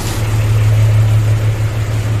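John Deere 5310 tractor's three-cylinder diesel engine idling steadily, just after being started.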